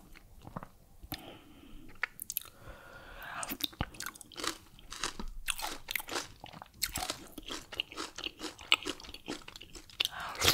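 Close-miked eating sounds of fufu with palm nut soup and BBQ turkey wings eaten by hand: wet, sticky chewing and mouth clicks with crunchy bites, growing busier about halfway through.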